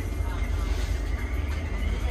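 Steady low rumble of a moving passenger train heard from inside the coach, with faint voices in the background.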